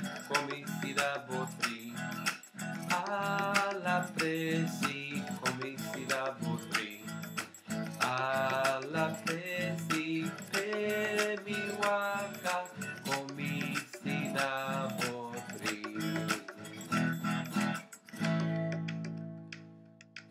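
Yamaha acoustic guitar strummed in a steady rhythm while a man sings the song's refrain along with it. Near the end, a last chord is held and rings out, fading away.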